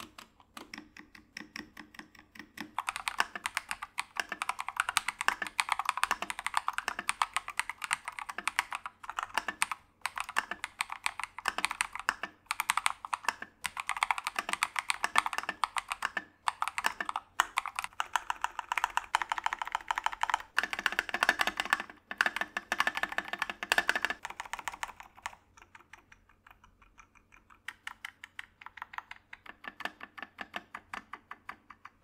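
Mechanical keyboards being typed on in a sound test: an Epomaker TH80 fitted with Gateron Pro Yellow linear switches, then a KiiBOOM Phantom 81 fitted with KiiBOOM Crystal switches. A few single key presses give way to long runs of fast typing with brief pauses, and it eases back to slower single presses near the end.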